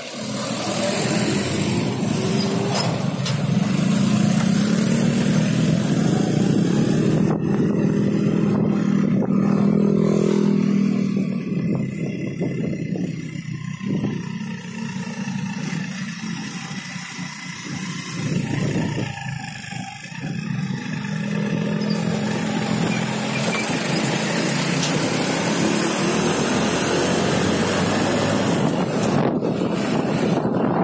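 Motorcycle engine running under way, mixed with road and wind noise; the engine sound eases off for several seconds in the middle and builds again later.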